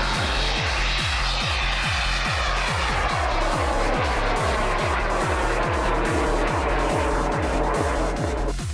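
Electronic dance music with a steady kick-drum beat, and over it the rushing roar of a rocket motor at liftoff. The roar starts abruptly and its tone slides downward as the rocket climbs away.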